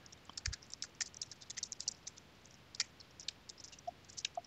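Typing on a computer keyboard: a quick, irregular run of faint keystroke clicks.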